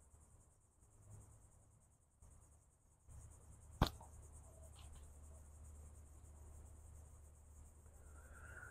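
A slingshot shot: one sharp snap as the 2 mm solid round latex bands are released about four seconds in, followed by faint soft taps as the ball strikes the catch box's fabric backstop. A steady high insect buzz runs underneath.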